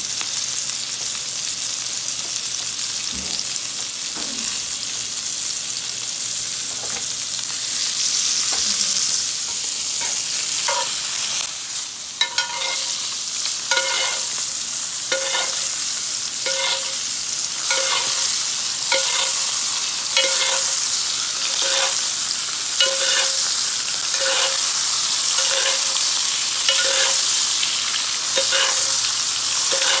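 Strip loin steak sizzling in butter in a cast-iron skillet. From about halfway through, a spoon bastes it, clinking against the pan in a steady rhythm of roughly one stroke every three-quarters of a second.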